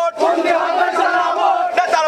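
A group of men chanting protest slogans in unison in Chittagonian Bengali, each phrase held on a steady pitch with short breaks between.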